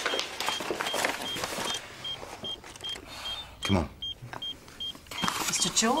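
Hospital patient monitor beeping fast and steadily at one high pitch, about two and a half beeps a second, over clattering and rustling of equipment being handled.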